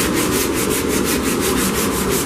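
Hand sanding of the painted front fender of a 1984 Chevrolet Monte Carlo: a pad rubbed over the panel in rapid, even back-and-forth strokes, a steady scratchy rasp, taking the paint down.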